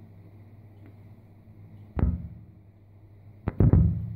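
Dull knocks: one sharp knock about two seconds in, then a louder double knock near the end, over a faint steady low hum.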